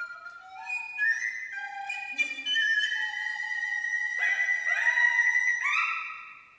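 Contemporary chamber music for flute, recorder, harp and harpsichord. High wind notes step quickly at first, with a few plucked attacks. A long high held note follows from about midway, and sharp upward swoops come near the end.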